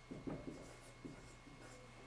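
Dry-erase marker writing on a whiteboard: a few short, faint strokes as letters are written.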